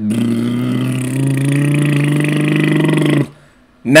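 A man's voice making one long, low, drawn-out mocking noise with his tongue out. The pitch holds nearly steady and steps up slightly about a second in, and the noise cuts off after about three seconds.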